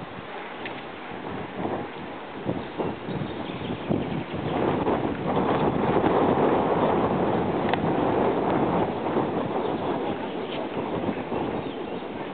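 Wind buffeting the camera microphone, building to its strongest in the middle and easing off toward the end, with scattered light clicks.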